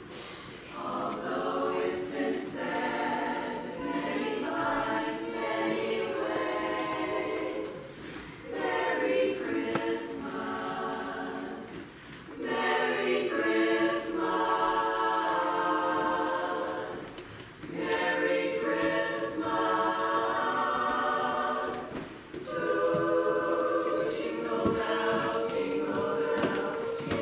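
Mixed choir of men and women singing a carol in harmony, phrase by phrase, with short breaths between the phrases.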